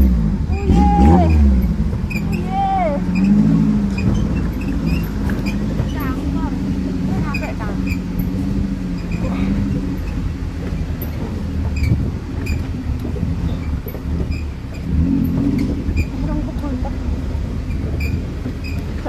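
Off-road jeep engine running at low revs on a bumpy dirt track, with scattered knocks and rattles from the jolting. People laugh near the start.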